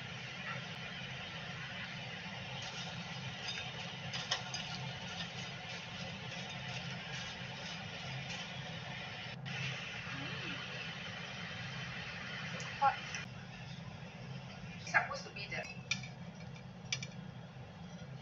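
Kitchen background: a steady low hum, with a few short clinks of tableware in the second half.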